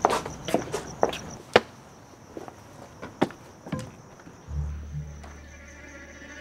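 Footsteps scuffing and clicking on a hard path, irregular steps over about the first four seconds, with crickets chirping steadily in the background. About four and a half seconds in, a low droning music cue comes in with held tones.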